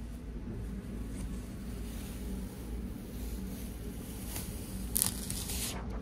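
Carrier sheet being peeled off a heat-pressed reflective heat-transfer vinyl design on a shirt, a rustling, ripping peel that gets loudest in the last second or so.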